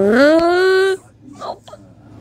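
A loud, high-pitched drawn-out cry that slides up in pitch, holds for about a second, then cuts off, followed by a couple of faint short sounds.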